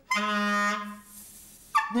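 Clarinet playing one short held low note, about a second long, that then fades out.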